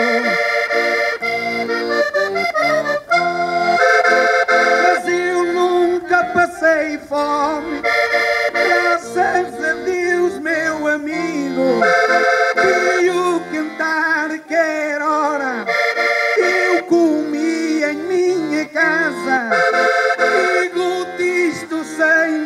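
Accordion playing a desgarrada (Portuguese cantares ao desafio) tune: sustained chords under a lively repeating melody with quick runs, an instrumental passage with no voices.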